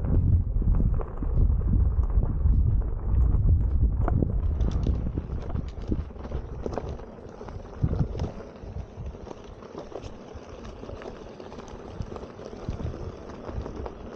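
Electric unicycle rolling over a loose, stony dirt track: wind buffets the microphone with a low rumble for the first few seconds, then eases, leaving the tyre's crunch with scattered knocks and clicks from stones.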